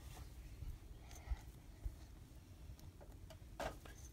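A few faint clicks of two pairs of jewelry pliers working a link of a metal chain open, over a low steady hum.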